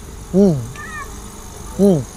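A man making two short, drawn-out 'mmm' sounds of enjoyment while tasting food, each rising then falling in pitch, about a second and a half apart.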